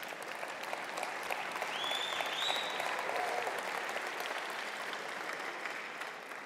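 Audience applauding, building a little a couple of seconds in and dying away near the end.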